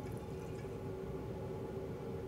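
Beer running steadily from a Blichmann BeerGun bottle filler into a glass bottle, pushed from the keg by CO2 at low pressure (about 5 psi) to keep foaming down. A faint, even liquid sound.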